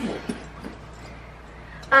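A woman's short laugh, then faint handling noise as the zipper of a leather duffel bag is pulled open.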